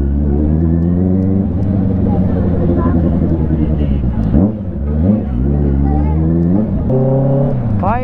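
Honda CBR650 inline-four sportbike engine running at low speed, its pitch falling and rising as the throttle is rolled off and on. About four and a half seconds in, the engine note drops sharply, then climbs again.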